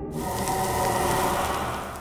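Steel wool burning as battery current overloads it, a steady fizzing hiss that starts suddenly just after the beginning, with soft background music underneath.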